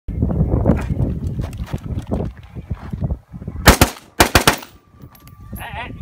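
Two quick strings of gunshots about three and a half seconds in, several shots in each, the strings half a second apart, after a stretch of busier, fainter clatter.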